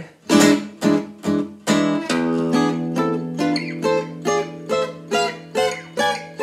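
Acoustic guitar playing short strummed chords, about two a second, weaving back and forth between A minor six and diminished triad shapes on the top strings. A low note rings on under the chords from about two seconds in.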